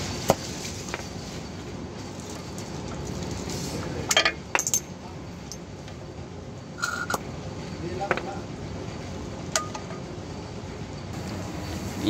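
Scattered metallic clicks and clinks of a hand tool and small steel parts being worked loose from a drum brake's wheel cylinder and adjuster. A sharp click comes just after the start and a quick cluster of clinks about four seconds in, over a steady background noise.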